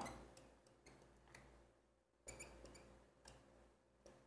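Near silence with a few faint ticks and scratches of a marker pen writing on a whiteboard, including a short cluster a little past halfway.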